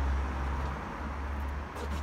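Outdoor background noise: a steady low rumble with an even hiss over it, and no distinct events.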